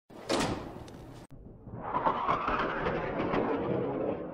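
Sound effect of large metal hangar doors: a clunk about a third of a second in, then, from about a second and a half, a long rattling slide as the doors roll open.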